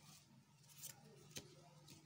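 Faint sounds of a plastic ruler and pencil being handled on drawing paper: a short scratchy rustle just under a second in, then a sharp tick about a second and a half in and a fainter one near the end.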